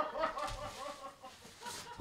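A woman's voice, faint and away from the microphone, in short rapid bursts.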